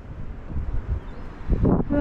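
Wind buffeting the microphone outdoors: an uneven low rumble that rises and falls in gusts. A voice starts near the end.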